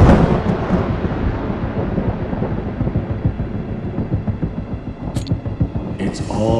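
Deep rumble of an explosion sound effect, loudest at the start and settling into a steady crackling rumble, with a brief sharp crack about five seconds in.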